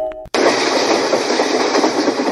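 Sound effect of a train carriage running along the rails: a loud, steady rumble and wheel clatter that starts abruptly just after a held musical chime dies away.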